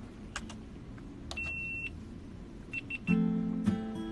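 A few light clicks, then an electronic beep held for half a second, followed by three quick short beeps. About three seconds in, a strummed acoustic guitar chord starts and rings on.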